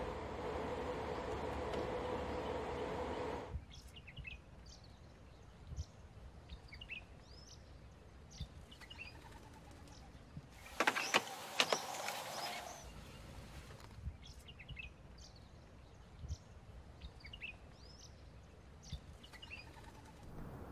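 A steady hum with two held tones that stops abruptly, then birds chirping in the open, and a short clatter of clicks about eleven seconds in as a charging connector is pushed into the Audi e-tron's CCS charging port and latches.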